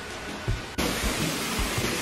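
Steady rushing and splashing of pool fountains and spray jets, which comes in suddenly a little under a second in.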